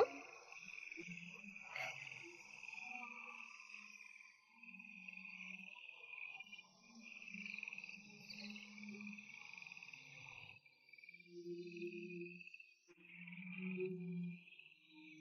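Faint night ambience of insects chirping steadily, with soft sustained low music tones swelling in and out. The chirping drops out briefly about ten seconds in, and a single click opens the stretch.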